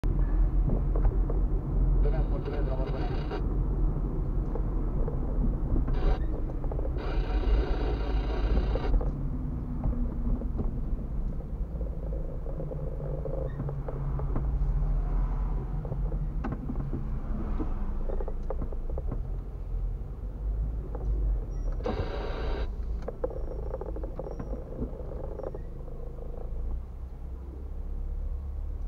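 Low, steady rumble of a car's engine and tyres heard from inside the cabin while driving slowly in traffic. A few brief, brighter sounds cut in over it.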